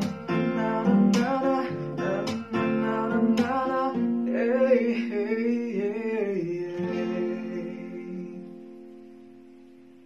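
Acoustic guitar played with a man singing over it. About halfway through the plucking stops under a held sung phrase, and the song ends on a final guitar chord that rings out and fades over the last few seconds.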